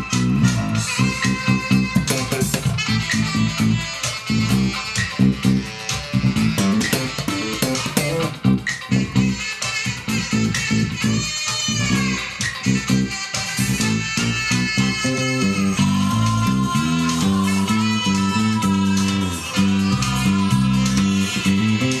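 Electric bass guitar played fingerstyle in a busy, flowing bossa-style line over a full pop band recording with drums, all picked up by a camera's built-in microphone.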